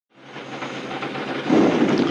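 Onboard sound of a 2021 Ferrari Formula 1 car at speed, its turbocharged V6 engine and the wind making a dense, noisy rumble. It fades in from silence and gets louder about one and a half seconds in.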